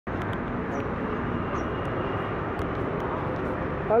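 Steady outdoor street noise, a traffic-like hum with faint distant voices and a few sharp clicks.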